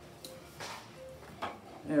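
A few light clicks and knocks from kitchenware being handled on a counter, over faint background music, with a spoken word starting at the very end.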